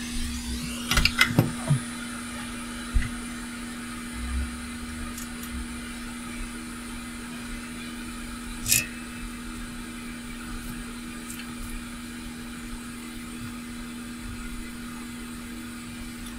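Hot air rework station blowing steadily, a continuous hum and hiss, with a few light clicks and taps of tools on the circuit board, the sharpest about nine seconds in.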